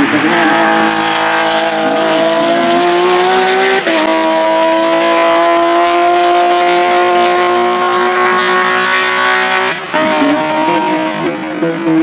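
Porsche 911 GT3 (997) race car's flat-six engine under hard acceleration, its note climbing, with a sharp upshift about four seconds in and a long pull through the next gear; near the end the note breaks off and drops as the car lifts off.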